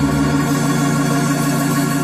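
Electric organ holding one steady sustained chord.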